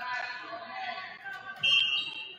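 Shouting voices in a gym, then about one and a half seconds in a short, loud, steady high blast from the referee's whistle, the signal for the server to serve.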